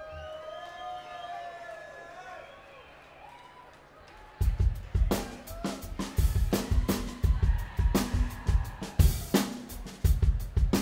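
Live rock band starting a song: a few quiet seconds of sliding tones, then about four and a half seconds in the drum kit comes in loud with a steady beat of kick drum, snare and cymbals.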